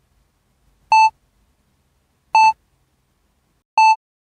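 Three short electronic beeps at one steady pitch, evenly spaced about a second and a half apart.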